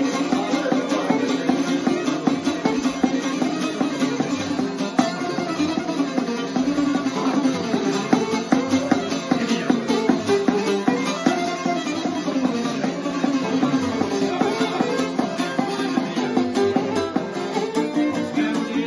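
A šargija picked with a plectrum and a bowed violin playing a kolo dance tune together. The šargija keeps up fast, even pick strokes while the fiddle carries the melody over it.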